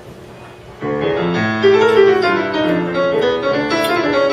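Solo jazz piano played on an acoustic grand piano, starting suddenly about a second in, with a moving bass line under chords and melody.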